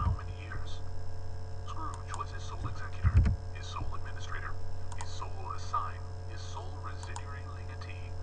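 Audiobook narration playing back sped up to 1.2x, indistinct and whispery, over a steady mains hum. A low thump about three seconds in is the loudest moment.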